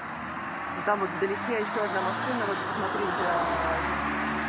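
Steady road and tyre noise inside a moving car, with a voice speaking over it during the first couple of seconds.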